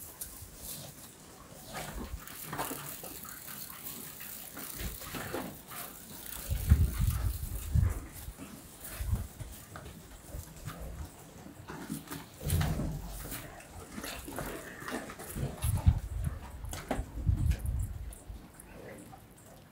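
Beef cattle eating hay at a feed trough: rustling hay and chewing, with several louder low bursts of breath.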